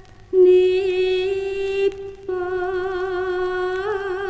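Javanese song recording: a woman singing long held notes with a slow vibrato. The voice comes in about a third of a second in and breaks once, a little after two seconds, before the next held note.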